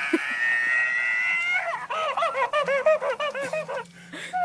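Electronic plush toy monkey crying through its small speaker when its banana is taken away. A long, slightly rising wail gives way to quick wavering sobs, about five a second, which stop just before the end.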